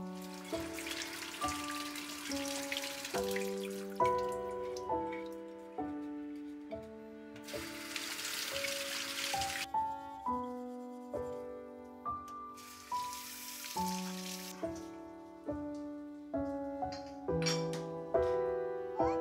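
Gentle piano music, with a kitchen tap running over a glass bottle in three spells: near the start, around eight seconds in and around thirteen seconds in.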